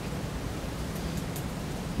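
Steady, even hiss of room tone with no speech.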